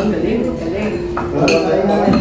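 Clinks of plates and cutlery at a shared meal table, with a few sharp clinks about a second in, over a steady murmur of several people's conversation.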